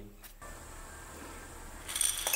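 Faint room hiss, then, near the end, tamarind seeds begin to clatter as they pour into a steel mixer-grinder jar.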